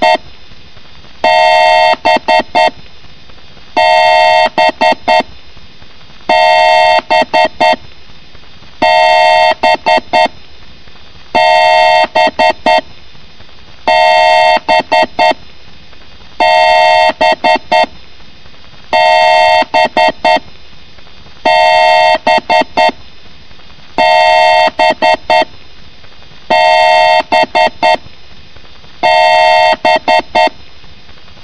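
Loud, harsh electronic beeping in a repeating pattern: one long beep of about a second, then a quick run of short beeps, cycling about every two and a half seconds.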